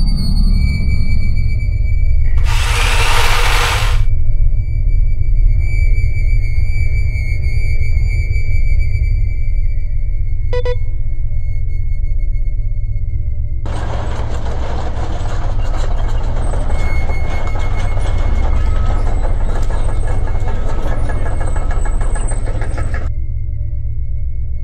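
Soundtrack of a low sustained musical drone under a steady high electronic tone. A rush of noise comes about three seconds in, a short blip near the middle, and a long stretch of dense hissing noise through most of the second half.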